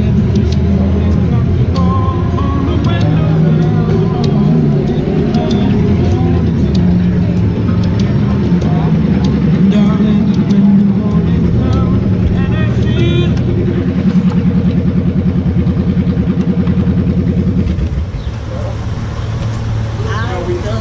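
Motorcycle engine idling steadily, with indistinct voices over it; the engine sound drops in level about two seconds before the end.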